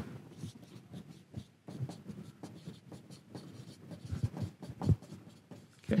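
Marker pen writing on a whiteboard: a run of short, irregular strokes, with one louder stroke near the end.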